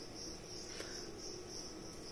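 Crickets chirping faintly and steadily in the background, a thin high trill with a slight pulse.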